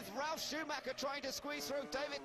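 A man's voice speaking steadily at a moderate level: TV race commentary over a Formula One race start.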